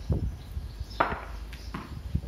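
Three sharp knocks, the loudest about a second in, over a steady low rumble.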